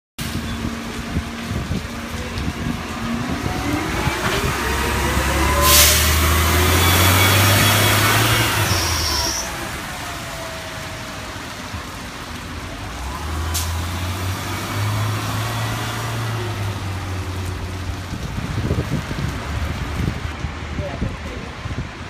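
Two NABI 60-BRT articulated buses, each with a Cummins Westport ISL-G 8.9 L natural-gas engine and an Allison B500R6 automatic transmission, pull away one after the other on wet pavement. Each gives a deep engine hum and a whine that rises in pitch as it accelerates and then falls away. A short sharp sound comes near the loudest point of the first bus, and another as the second bus sets off.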